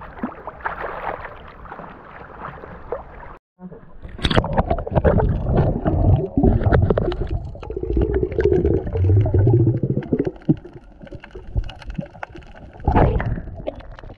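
Small waves lapping at a waterproof action camera held at the sea surface, then after a sudden break the muffled underwater sound of the submerged camera: bubbling and gurgling water with a low rumble and small clicks.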